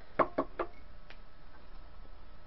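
Knitting needles clacking together three times in quick succession, about a fifth of a second apart, the first the loudest, then once more faintly, as a large knitted shawl still on its needles is lifted and shaken out.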